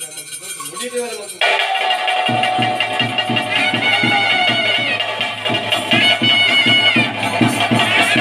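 Drums beating a steady rhythm under a nadaswaram holding one long note that bends near its end, followed by higher wavering notes. The music starts suddenly about a second and a half in, after a quieter stretch.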